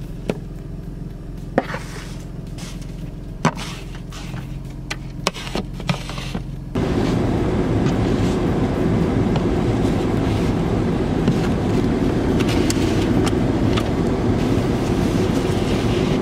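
Car heard from inside the cabin, its engine idling with a low steady hum, while an ice scraper scrapes and knocks snow and ice off the windshield in short sharp strokes. About seven seconds in, a much louder steady rushing noise cuts in suddenly and runs on.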